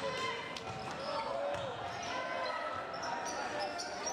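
Live basketball game sound in a gym: sneakers squeaking on the hardwood court and a ball bouncing, over crowd chatter.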